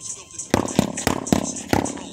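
A quick combination of about five punches from boxing gloves smacking into focus mitts, starting about half a second in, over hip hop music.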